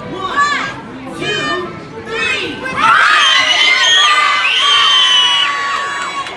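A group of children shouting and cheering. The loudest part comes about three seconds in, with long, high, held shouts.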